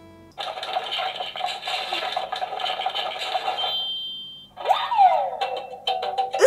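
Animal Crossing Tom Nook 'Ton-ton kan-kan' kitchen timer going off as its countdown reaches zero: an electronic jingle with quick tapping starts suddenly and runs for about three seconds. After a brief pause there is a falling swoop that settles into a held tone.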